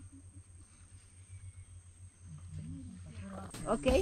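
Faint, low human voices murmuring over a steady low hum, getting louder just before the end.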